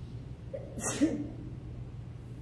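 One short, sudden vocal outburst from a person about a second in, over a steady low hum.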